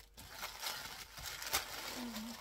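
Crinkly polka-dot packaging being handled and opened, rustling and crinkling, with a sharp click about one and a half seconds in.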